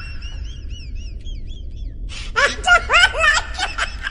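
A woman laughing: high, squeaky giggles that trail off in the first second and a half, then a louder burst of laughter with rising pitch from about two seconds in.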